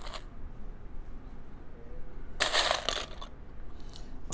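Loose Mould King plastic bricks rattling and clicking as a hand rakes through a pile of parts, with a short burst of clatter about two and a half seconds in.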